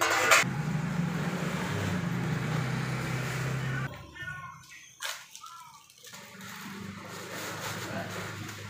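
Busy market background: a brief clatter at the start, then a steady low motor hum that stops abruptly about four seconds in, followed by a few faint voices.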